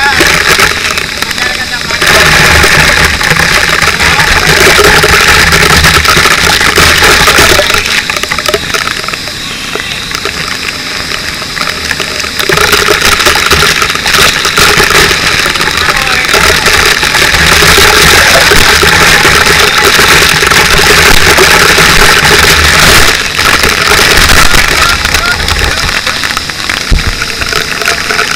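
Water from a fire hose spraying and spattering against a helmet-mounted camera, a loud steady hiss with an engine running underneath; it is quieter for a few seconds near the middle.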